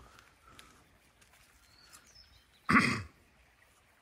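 A single short, loud, breathy burst, a sneeze- or cough-like exhale, about three-quarters of the way in. Faint bird chirps around it.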